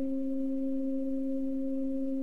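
A steady hum at one low pitch, with a fainter tone an octave above it.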